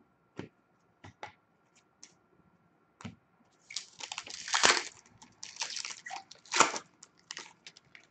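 Trading cards being handled over a glass tabletop: a few light taps and clicks, then two longer bursts of rustling and scraping as the cards are shuffled and slid together.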